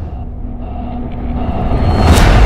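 A deep cinematic rumble from a trailer soundtrack, with a few faint held tones over it, slowly swelling in loudness.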